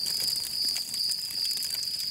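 Crickets trilling steadily in a high, thin tone at night, with faint crackling underneath.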